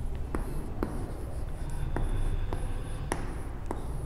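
Chalk writing on a blackboard: scratchy strokes broken by about six sharp taps as the chalk strikes the board.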